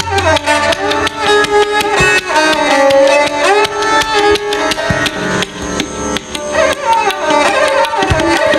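Tabla playing a fast dhir dhir rela, a dense stream of rapid strokes, with a sarangi bowing a gliding melody over it.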